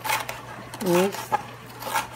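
Chef's knife slicing a red bell pepper on a plastic cutting board: a few sharp taps of the blade against the board. A short spoken sound about a second in is the loudest thing.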